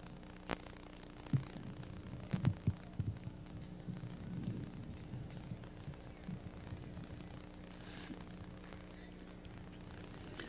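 Quiet background with a steady low hum and a few faint knocks in the first three seconds.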